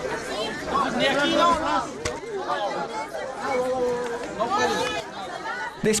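Crowd chatter in a tight press scrum: several voices talking over one another, with one sharp click about two seconds in.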